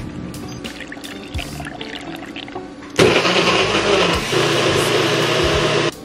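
Personal blender motor starting about halfway in and running for roughly three seconds, blending strawberries and ice into a thick smoothie. Its hum rises in pitch partway through, and it cuts off suddenly just before the end. Background music plays throughout, with a few clinks before the blender starts.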